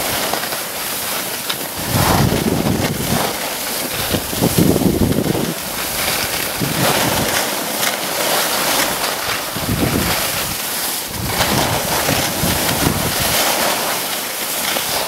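Wind rushing over the camera microphone during a fast ski descent, buffeting it in surges every couple of seconds, over the steady hiss of skis sliding on packed groomed snow.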